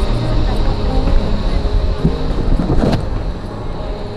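Outdoor ambience of a busy pedestrian square: a steady low rumble with voices of passers-by, and one sharp click about three seconds in.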